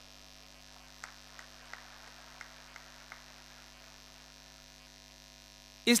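Faint, steady electrical mains hum from the sound system, with about six faint ticks between one and three seconds in.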